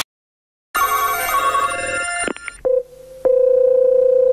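Telephone line sounds as a call is placed. After a short dead silence comes a burst of electronic tones and a couple of clicks. Then a single steady tone sounds, briefly at first and then held from about three seconds in: the line ringing at the other end.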